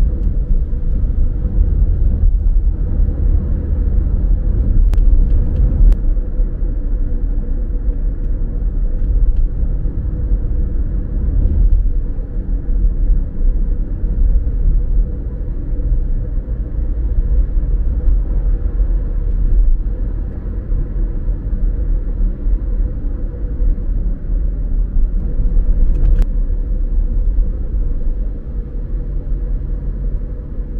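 Car driving along a city road: a steady low rumble of engine and tyre noise, with a faint steady hum over it.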